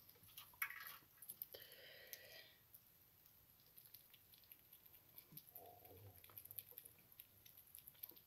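Faint, irregular small clicks and smacking of a sugar glider chewing a treat held on a fingertip.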